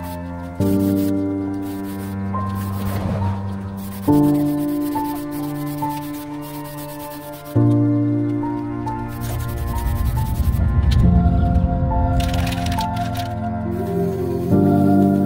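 Background music of sustained synth-organ chords that change about every three and a half seconds.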